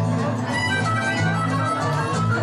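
Live blues music: an amplified harmonica, played cupped against a hand-held microphone, wails in held, bending notes over a steady bass line and a band.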